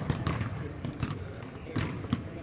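Basketballs bouncing on a hardwood court in a large arena hall, a run of irregularly spaced knocks, about four a second.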